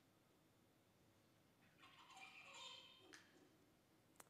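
Mostly near silence. About halfway through, a faint juvenile songbird's song sounds for about a second and a half, ending with a faint click.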